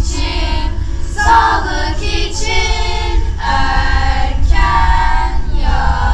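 A choir of children and teenagers singing a song together in sung phrases, over a steady low rumble.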